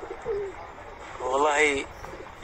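Pigeon cooing: a faint short coo near the start, then one longer wavering coo about a second and a half in.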